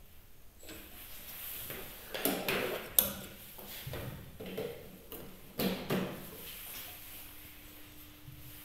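Handling sounds on a bench: rustles and knocks, with one sharp click about three seconds in, as a hand moves to the variac knob. A faint steady hum starts near the end.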